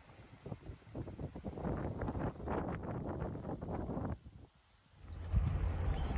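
Wind noise on a handheld phone microphone with irregular rustling and knocks as the camera moves, broken by a brief dropout just past the middle and followed by a steady low wind rumble.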